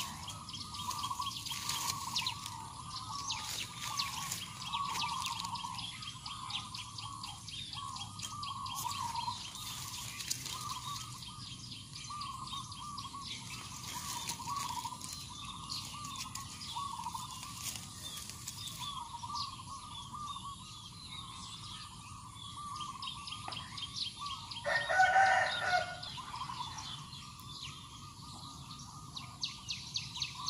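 Birds chirping repeatedly throughout, with a rooster crowing once, louder, near the end.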